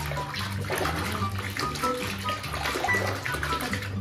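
Water swishing and sloshing in a plastic basin as a hand stirs it, working small-animal shampoo into a lather, under background music with sustained notes.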